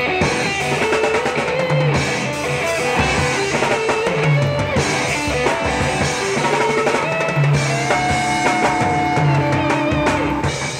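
Live rock band playing through amplifiers: electric guitar over a drum kit with bass drum beats, with held guitar notes ringing over the beat.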